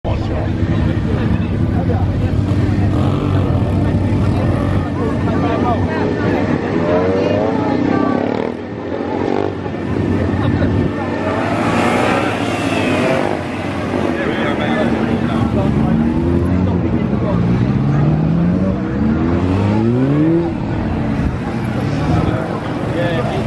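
Suzuki SV650S V-twin motorcycle engine revving in short bursts, its pitch rising again and again and dropping between, as the bike accelerates and slows between cones. There are several quick rising revs near the end.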